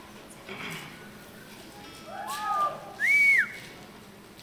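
A person whistling: a short rising-and-falling call a little past halfway, then a loud whistle near the end that rises, holds and drops away.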